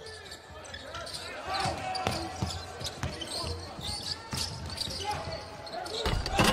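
Basketball being dribbled on a hardwood court: a scatter of single bounces, with short high shoe squeaks and faint players' voices echoing in a large hall.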